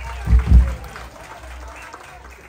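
Audience applauding, with two deep thumps about a third and half a second in.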